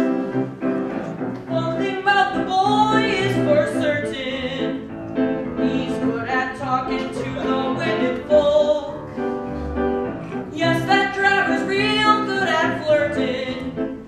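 A live stage musical number: a voice singing over instrumental accompaniment that includes a double bass.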